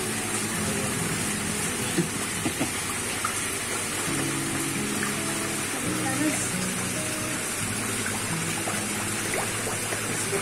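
Small waterfall splashing into a koi pond, a steady rush of falling water. Background music with sustained notes comes in about four seconds in.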